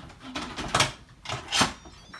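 Instant Pot lid being fitted and twisted into place on the pot: a handful of short scraping clicks of lid against rim, the loudest about three quarters of a second and a second and a half in.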